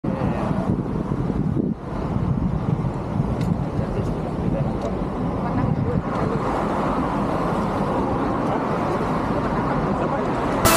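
Road traffic on a busy city road: a steady rumble of passing cars and engines, with a brief dip in level just before two seconds in.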